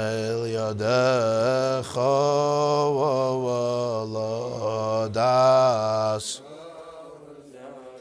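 Men singing a slow Hasidic melody, a niggun. The singing breaks off about six seconds in, leaving a much quieter stretch.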